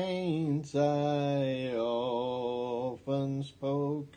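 A man singing a hymn solo without accompaniment, slow and drawn out, holding one note for about two seconds before a few shorter notes.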